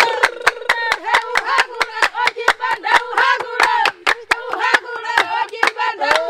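Himba women clapping their hands in a quick, even rhythm while singing and chanting together, as accompaniment to a dance.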